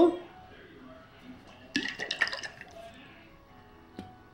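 A short burst of clicks and rustling about two seconds in as a plastic squeeze bottle of hot sauce is picked up and handled.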